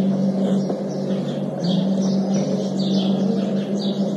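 Small birds chirping repeatedly in quick clusters over a steady low hum.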